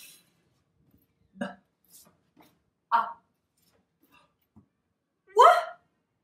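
A woman saying single letter sounds one at a time, each short and clipped with pauses between: a hissed 'fff', then 'b', 'a', and a louder 'w' near the end.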